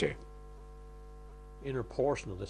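Steady electrical hum, several faint steady tones held level, with a voice coming back in near the end.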